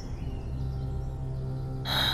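Dramatic background music: a low sustained chord held steady, with a short breath near the end.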